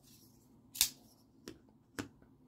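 Benchmade Bugout folding knife being handled and set down on a cutting mat: three short clicks, the loudest just under a second in, then two fainter ones.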